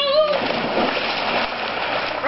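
A body hitting pool water after a jump from a diving board: a splash begins sharply about a third of a second in, followed by water churning and slapping.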